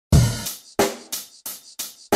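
Drum beat opening a music track: a deep kick, then a run of evenly spaced snare and cymbal hits about three a second.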